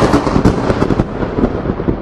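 Thunderclap sound effect: a loud crackling rumble that slowly dies away.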